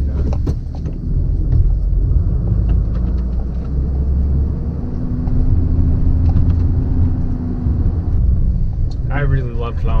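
Pickup truck running and driving, a steady low rumble heard from inside the cab, with a steadier hum for about three seconds in the middle.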